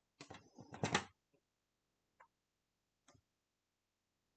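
A quick cluster of plastic clicks and handling noise as wavy-edge border-cutting cartridges are set in place on a paper trimmer, followed by a couple of faint single ticks.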